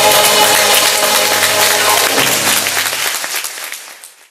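Audience applauding over the last held chord of the song's accompaniment, with both fading out near the end.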